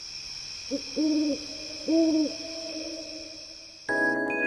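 Owl-like hooting: a short note, then two longer hoots about a second apart, over a steady high-pitched hiss.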